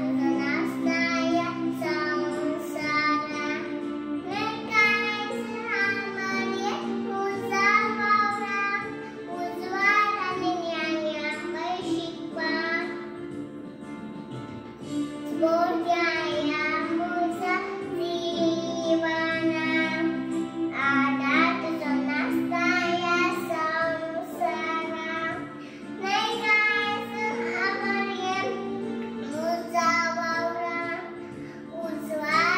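A young girl singing in phrases of a few seconds, her voice high and held on long notes, over steady sustained instrumental accompaniment.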